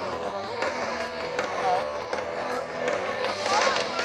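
Heavy metal band on an outdoor festival stage, heard at a distance through the PA and mixed with crowd noise, with nearby voices chattering near the end.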